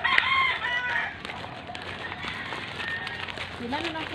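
A rooster crows once in a call lasting about a second. Its arching notes rise and fall at the start.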